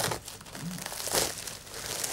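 Bubble wrap and plastic sheeting crinkling and rustling as it is handled and pulled off a large wrapped instrument cabinet, loudest about a second in.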